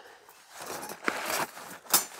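Rustling handling noise with two sharp metal clicks, the louder one near the end, as the Firebox Freestyle stove's flat metal panels are handled and set down.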